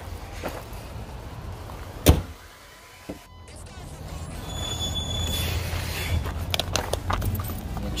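A single loud slam about two seconds in, then rustling and a low rumble as someone climbs into a car seat.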